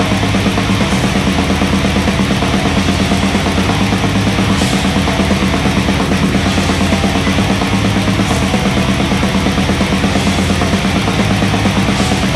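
Blackened death metal: heavily distorted electric guitars over fast, steady drumming.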